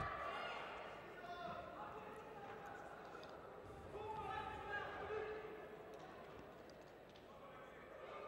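Indistinct voices calling out across an arena hall, with a single thud right at the start.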